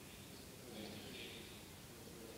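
Faint speech of a man talking into a handheld microphone, starting up a little under a second in.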